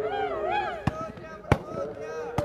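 Volleyball struck hard by hand twice during a rally, two sharp slaps about two-thirds of a second apart, the second louder. A voice calls out with rising and falling pitch before them.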